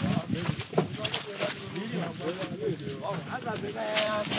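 Voices of several people talking in the background, with scattered short clicks and knocks.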